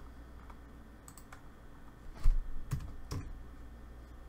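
Several sharp clicks from a computer mouse and keyboard at irregular intervals as points are placed while drawing a polyline in CAD software; the loudest, a little over two seconds in, carries a low thump.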